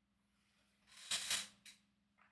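A short, breathy intake of air about a second in, with a smaller second puff just after, over a faint steady hum.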